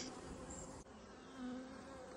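Faint buzzing of honeybees around an open hive, with one bee's hum swelling briefly just past the middle.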